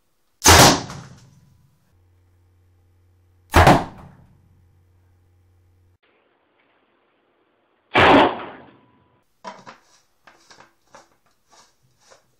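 Three loud potato-gun blasts, each a sharp bang with a short fading tail, about three and four seconds apart. Faint clicks and knocks of handling follow near the end.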